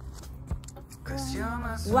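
Mostly a woman's voice: after a quieter first second with a single click, she calls out in a rising, drawn-out voice that runs into the word "one" at the end.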